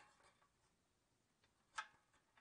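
Near silence, with one faint brief click near the end.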